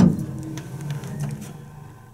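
A sharp metallic snap as the car's small stainless-steel phone-cabinet door is shut, then the steady low hum of a Haughton hydraulic elevator running, slowly fading.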